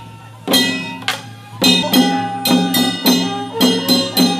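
Procession percussion of drums and small gongs struck with sticks in a steady beat, about two to three strokes a second, the gongs ringing at several pitches. The beat comes in about half a second in after a brief lull.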